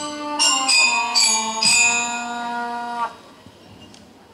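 Electronic keyboard playing a short phrase of overlapping sustained notes in a bell-like tone, the notes cutting off abruptly about three seconds in.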